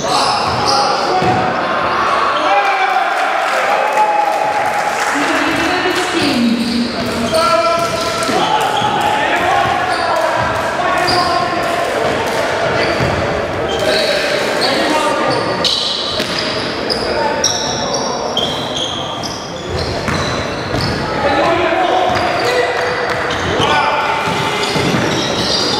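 Live basketball play in a large, echoing gym: the ball bouncing on the wooden floor, short high squeaks, and players' indistinct calls.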